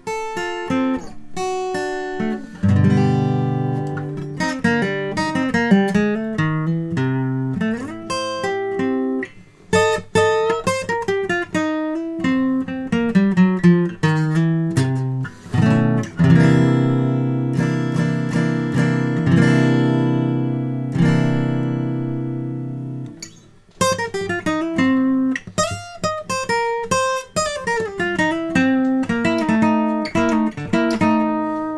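Aria Hummingbird model 9260 acoustic guitar, all-laminate woods and strung with D'Addario 80/20 bronze strings, played solo: a flowing run of picked single notes and chords. About halfway through, a chord is left ringing for several seconds before the picking resumes.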